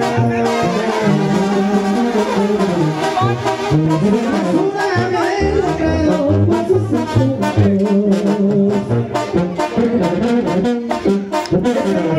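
Mexican banda brass music playing loudly: trumpets and trombones over a low bass line that steps from note to note.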